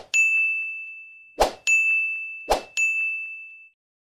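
Subscribe-button sound effect: a click followed by a bright bell-like ding, three times, each ding ringing on and fading.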